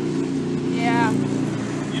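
A person's voice briefly over a steady low engine hum.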